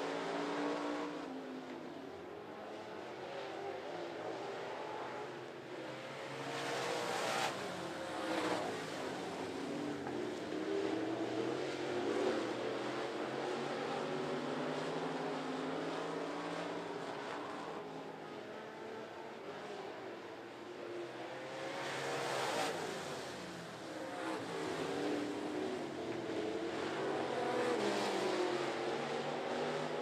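Several dirt-track race cars running hard around the oval, their engines rising and falling in pitch as they go by. The loudest passes come about seven seconds in, about twenty-two seconds in and near the end.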